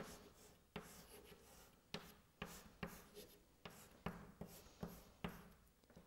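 Chalk writing on a chalkboard: faint sharp taps and short scratches as the letters are drawn, about two strokes a second.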